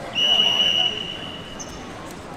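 A referee's whistle: one loud, steady, high blast just under a second long, trailing off over the next second.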